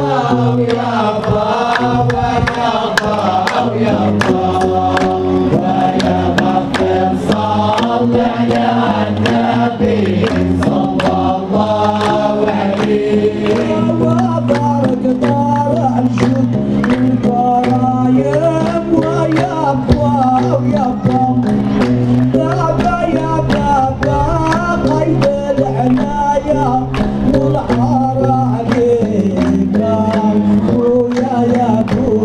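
Male chorus of a Hamdcha (Hamadsha) Sufi brotherhood chanting a devotional song together over a low held drone of voices, with sharp hand clapping throughout.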